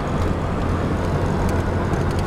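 Steady road noise of a car cruising at highway speed, heard from inside: a constant low drone from engine and tyres with an even hiss over it.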